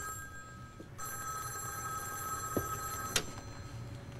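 A telephone ringing: one steady ring lasting about two seconds, starting about a second in. It cuts off with a click as the receiver is picked up.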